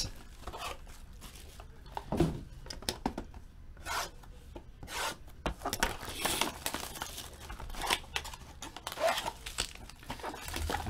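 Plastic shrink wrap being torn open and peeled off a trading-card box, in irregular crinkling rips and rustles, with the cardboard box rubbing in the hands.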